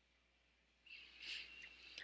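Near silence, broken by one faint, short squeak of a black Sharpie felt-tip marker dragged across paper a little over a second in.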